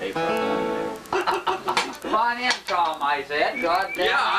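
Acoustic guitar music with a man's voice. A held, ringing note sounds for about the first second, then a voice rising and falling in pitch carries on to the end.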